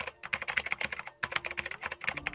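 Keyboard typing sound effect: a rapid run of keystroke clicks with a brief pause a little past halfway.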